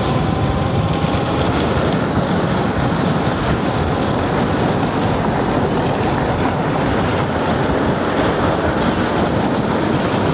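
Steady rush of wind on the microphone with tyre and road noise from a Nanrobot N6 72V electric scooter ridden at speed.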